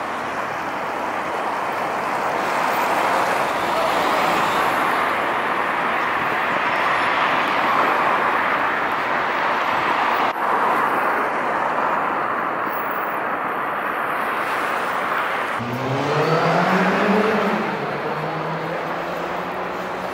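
Steady road traffic noise from a busy city street, a continuous rush of passing cars. About three-quarters of the way through, one vehicle's engine accelerates nearby, its pitch rising and then levelling off.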